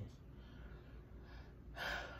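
Faint room noise, then a sharp intake of breath near the end.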